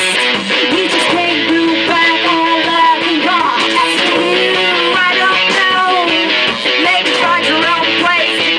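Live indie rock band playing loud, guitar-driven music with strummed electric guitar, and a woman singing into a microphone.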